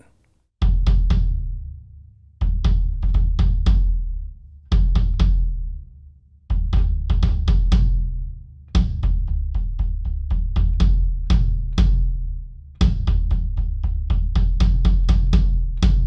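Maple kick drum with no dampening and an unported front head, played in short runs of rapid strokes, each run left to ring out in a long, low, round boom. A plastic beater on plastic heads gives each stroke a sharp click on top.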